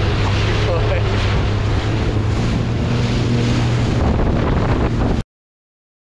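Jet ski (Yamaha WaveRunner) running at speed: a steady low engine drone under wind buffeting the microphone and water noise. The sound cuts off abruptly about five seconds in.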